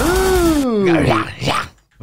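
A man's long, drawn-out exclamation that rises briefly and then slides down in pitch, breaking into a laugh. Loud electronic metal music under it stops abruptly about two-thirds of a second in, as the song is paused.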